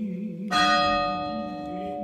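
A bell struck once about half a second in, ringing on and fading slowly, over sustained chanting.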